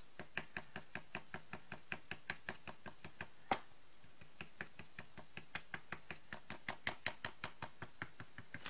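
Quick, regular taps of a small hand-held ink applicator being dabbed onto glossy cardstock, about four a second, with one louder knock about three and a half seconds in. The dabbing lays dark ink around the picture's edges as shading.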